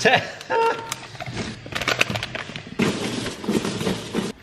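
Gloved hands rummaging in a cardboard parcel, its packaging rustling and crinkling in quick, irregular crackles.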